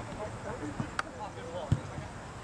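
A soccer ball kicked with a single hard thump near the end, after a lighter sharp click about halfway through, over faint players' voices across the field.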